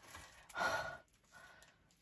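A woman's breathy sigh, once, about half a second in and lasting about half a second, out of breath from wrestling a large box.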